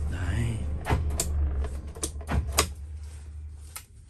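JAC Sunray's Cummins 2.8-litre turbo-diesel idling, heard from inside the cab as a low steady hum that fades near the end. Several sharp clicks and knocks sound over it.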